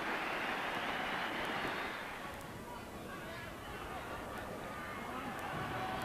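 Stadium crowd cheering a score. The noise eases after about two seconds into a lower, steady crowd murmur.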